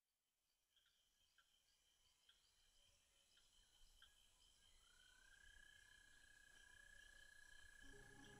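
Near silence, with faint short chirps repeating and a faint steady tone that slides up about five seconds in and then holds, all slowly growing louder.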